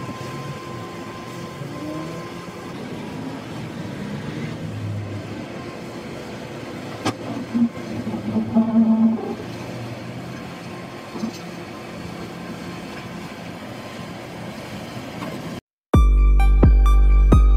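Komatsu tracked hydraulic excavator working at the water's edge: its diesel engine runs steadily while the arm swings, with a few louder surges of engine and hydraulic noise about seven to nine seconds in.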